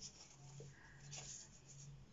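Faint rustling of printed paper pages being handled and leafed through, over a low steady hum.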